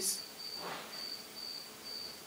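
Cricket chirping: a high, thin trill in short repeated pulses, with a faint soft whoosh a little over half a second in.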